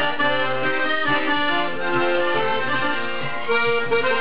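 Solo piano accordion playing a tune, the right-hand melody over a rhythmic accompaniment of repeated bass notes.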